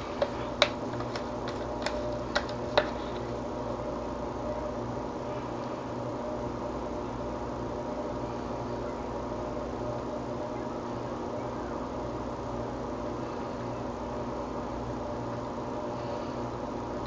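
A spatula knocking against a plastic jug about eight times in the first three seconds, tapping out the last of the soap batter. After that, only a steady low hum.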